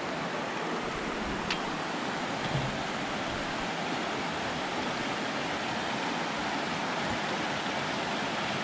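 Shallow rocky creek flowing, a steady rush of water, with a single sharp click about one and a half seconds in.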